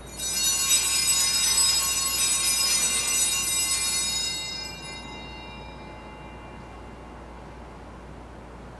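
Altar bells rung at the elevation of the chalice during the consecration, starting suddenly with many high ringing tones that fade away over about five seconds.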